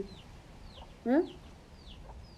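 Chickens peeping faintly with short, high, downward-gliding chirps every half second or so, and one short rising call about a second in.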